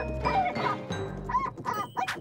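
Cartoon music score with short, squeaky, whimper-like character vocalizations over it, more of them toward the end.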